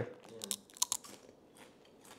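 Close-up bite of a hard, crunchy crisp stick: a few sharp crunches within the first second as it breaks between the teeth.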